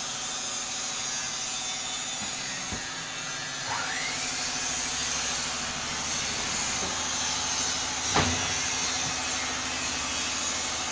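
Steady hum of workshop power tools running, with a brief rising whine about four seconds in and a sharp knock a little after eight seconds.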